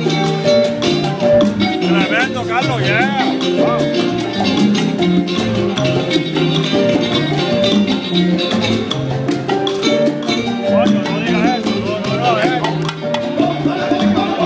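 A Cuban son montuno band playing live: tres guitar, congas and hand percussion keep a steady, even pulse over a moving bass line. Twice, a lead voice sings bending, ornamented phrases over the band.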